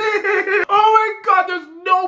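A man laughing hard in high-pitched, drawn-out bursts.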